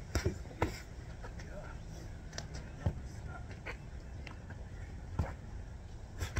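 Boxing gloves landing punches: a few sharp, separate hits spread over several seconds, the strongest near the start and end, over a steady low rumble.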